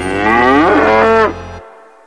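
A single drawn-out call with a wavering pitch over a steady low hum. It breaks off just over a second in and trails away to quiet.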